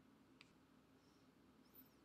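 Near silence: room tone, with one faint short click about half a second in and a fainter tick near the end.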